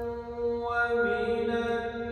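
A man reciting the Quran solo in the melodic tajwid style, singing long held notes with a shift in pitch partway through.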